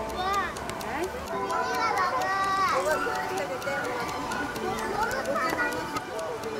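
Young children talking and calling out, with high-pitched voices rising and falling over outdoor background chatter.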